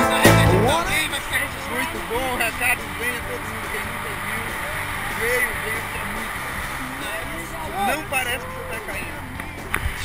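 Quiet background music with people's voices talking over it.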